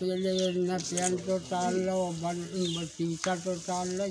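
A man's voice talking, with a steady hiss of recording noise under it.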